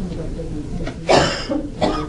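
A person coughing twice, the first cough about a second in and louder, the second near the end, over faint background talk.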